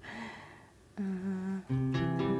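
Ambient guitar pad from the Guitars in Space sample library (sampled clean electric guitar) played on a keyboard: a reverb tail fades out, then a held, slightly wavering note starts about a second in and a lower note joins near the end.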